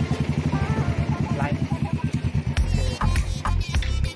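Motorcycle engine idling with rapid, even low pulses. About two-thirds of the way through, music with a heavy bass beat comes in over it and becomes the loudest sound.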